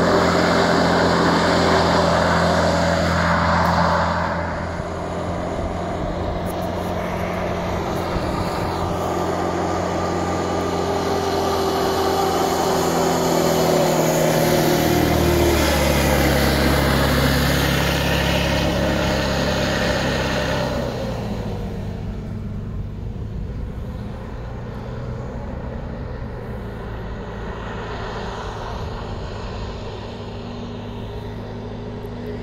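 Hovercraft engine and propeller running with a steady pitched note. The pitch drops about halfway through, and the sound gets quieter over the last third as the craft draws away.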